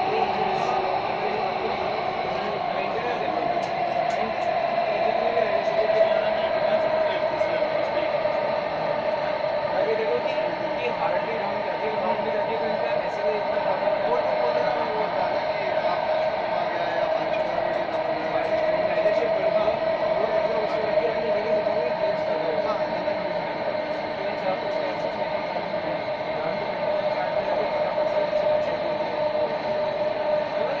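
Delhi Metro Magenta Line train running between stations, heard from inside the car: a steady rumble with a drone that slides slightly lower over the first few seconds and then holds.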